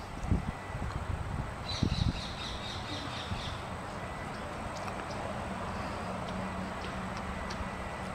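A bird gives a quick run of short, high chattering notes about two seconds in, over a steady outdoor background hiss. A few low knocks come in the first two seconds as meat is handled on the grill grate.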